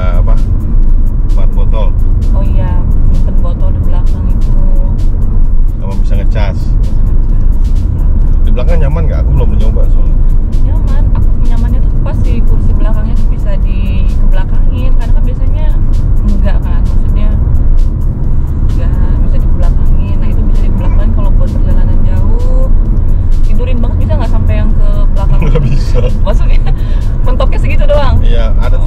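People talking over background music, with the steady low rumble of road noise inside a moving Mitsubishi Xforce's cabin underneath.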